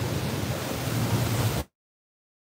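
Steady rush of wind and running noise on a phone microphone aboard a motor catamaran under way, with a low steady hum beneath it. About a second and a half in, the sound cuts out abruptly to dead silence.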